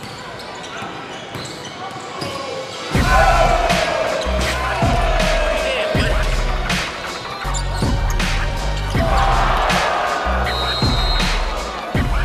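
Basketball bouncing on a hardwood court in game play. A music beat with a heavy bass comes in about three seconds in and carries on with a regular pulse.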